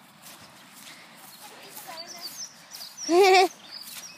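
A sheep bleating once, about three seconds in: a loud, wavering baa lasting about half a second.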